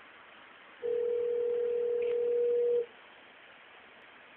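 Telephone ringback tone: one ring of a steady tone lasting about two seconds, starting about a second in, heard by the caller while the called phone rings at the other end.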